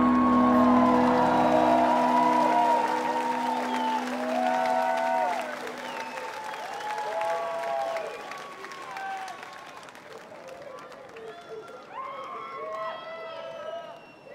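The last held chord of a live rock song dies away, its bass cutting off about two seconds in and a lingering keyboard tone by about six seconds. A large open-air festival crowd then cheers and applauds, with single voices calling out over it.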